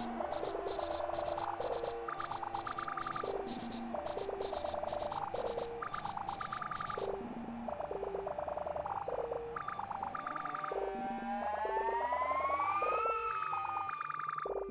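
Live electronic music from an Elektron Digitakt and synth: a looping sequence of short pitched blips with hi-hat-like ticks that drop out about halfway through. Under it a held synth tone glides upward and then back down near the end.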